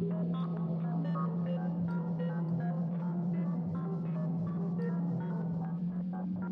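Native Instruments Low End Modular software synthesizer playing its 'Broken Robot' source sound: a steady low bass drone with short, scattered glitchy notes and blips over it.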